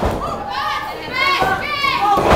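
Spectators at a wrestling match yelling and shouting in high-pitched voices, like children's, with a short thud at the very start.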